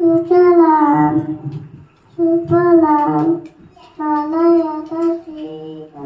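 A young child singing solo into a microphone without accompaniment, in four short phrases of held notes with brief pauses between them.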